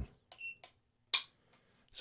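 A short electronic beep from a digital trigger pull gauge, then about a second in a single sharp metallic click as the 1911's hammer falls on an empty chamber when the trigger breaks. The gauge reads the pull at four pounds 13.7 ounces.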